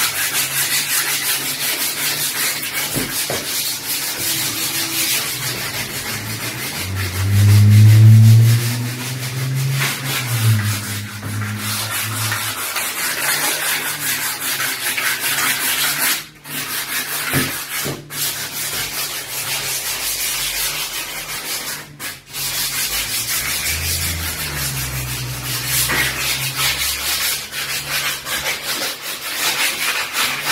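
Sandpaper rubbed by hand along a wooden door frame: steady, rapid scratchy strokes with a couple of brief pauses. A low humming tone swells for a few seconds about seven seconds in, the loudest part, and comes back more faintly near the end.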